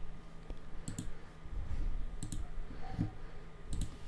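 Computer mouse button clicking, three quick double clicks spread about a second apart, over a faint low room hum.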